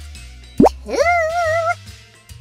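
A cartoon pop sound effect, one quick upward-sliding bloop, over light background music.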